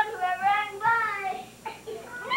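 A young child's high, wordless voice, squealing in a wavering sing-song for about a second and a half, then dying away.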